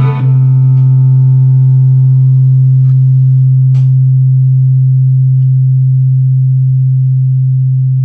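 Guitar strumming stops just after the start, leaving one loud, low bass note held steadily. Its upper overtones thin out and it slowly fades, with a couple of faint clicks midway.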